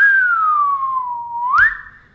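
Whistling: one long whistled note that slides slowly down, then sweeps sharply up about one and a half seconds in, with a short click as it turns upward.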